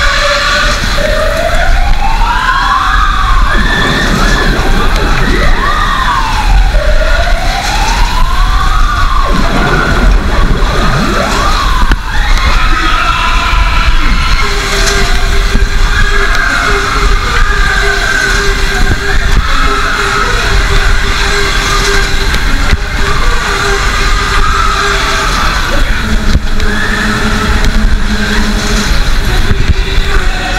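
Siren sound effect over a fairground ride's speakers, a wailing pitch that winds up and drops back again about five times in the first twelve seconds. It sits over the constant rumble of the Matterhorn ride running at speed, and held notes of music follow later.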